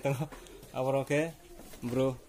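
A man's voice in drawn-out, level-pitched sing-song syllables: one group about a second in and a shorter one near the end.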